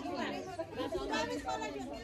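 People talking: speech only, with no other distinct sound.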